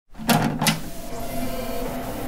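Two sharp clunks about a third of a second apart, followed by steady sustained tones as a TV show's electronic intro music begins.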